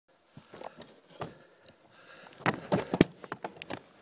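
Irregular clicks, taps and knocks, growing denser and louder toward the end, the sharpest a little after three seconds in: handling noise of a phone held at arm's length and rubbed against its microphone.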